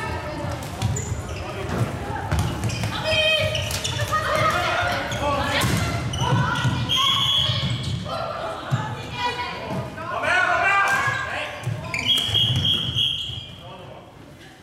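Floorball play in an echoing sports hall: players' voices calling across the court over thuds of feet and ball on the floor. Two short high-pitched tones sound, one about seven seconds in and a longer one near the end.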